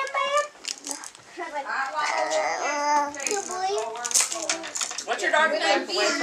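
Young children's voices talking and babbling indistinctly in a small room.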